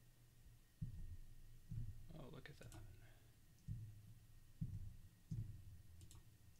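Quiet, dull clicks of a computer mouse and keyboard, picked up as low thuds about five times, unevenly spaced, while blocks are removed in the WordPress editor.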